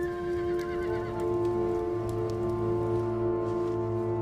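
Background score music holding a steady sustained chord. In about the first second a horse whinnies once, a wavering cry that falls slightly in pitch.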